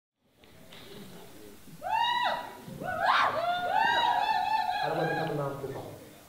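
A person's high-pitched voice making drawn-out rising-and-falling sounds without clear words, starting about two seconds in after faint hiss and dying away near the end.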